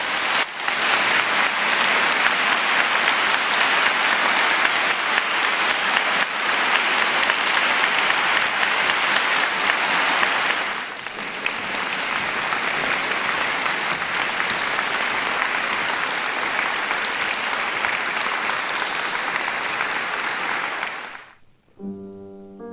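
Concert-hall audience applauding steadily, dipping briefly about halfway through and cutting off suddenly near the end.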